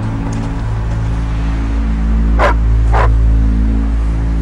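A dog barks twice, about half a second apart, over a low, sustained drone of background music.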